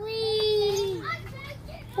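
A high voice calls out a long, slightly falling "ooh" for about a second, followed by fainter short calls.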